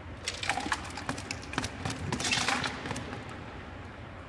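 Ice cubes clattering out of a metal trophy cup into a plastic water cooler. It is a run of quick irregular clinks and knocks, thickest about two seconds in, then tailing off.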